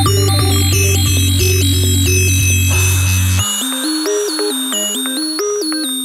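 Electronic bass music with a repeating stepped synthesizer arpeggio. The heavy low bass cuts out suddenly about three and a half seconds in, leaving the arpeggio over a lighter, higher synth bassline.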